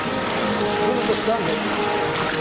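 Voices talking in the background over steady, continuous street noise.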